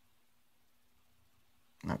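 Near silence: room tone with a faint steady hum, until a man's voice starts speaking near the end.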